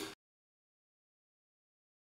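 Dead digital silence, after the tail of a spoken word cuts off abruptly at the very start.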